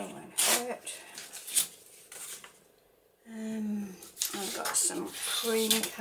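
Handmade paper being torn along a metal deckle-edge ruler, with short ripping sounds in the first two seconds, then paper sheets being moved. A woman's voice murmurs softly over it.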